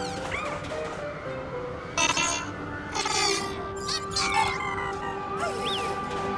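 Soft background music with held notes, broken by short bursts of chirpy, beeping calls from small cartoon robots about two and three seconds in, and a few lighter chirps near the end.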